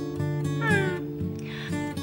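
Soft acoustic-guitar background music with sustained notes, and a short vocal sound that falls in pitch about two-thirds of a second in.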